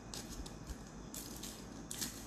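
Aluminium foil wrapper of a dark chocolate bar crinkling as it is peeled open by hand, in several short, faint rustles.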